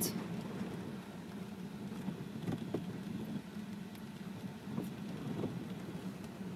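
Car driving slowly through floodwater, heard from inside the cabin: a steady low engine drone with a few faint knocks.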